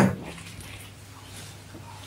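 A single cough, dying away within the first moment, then quiet room tone.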